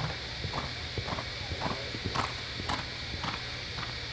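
Hoofbeats of a horse walking on arena dirt, about two a second, over a steady low hum.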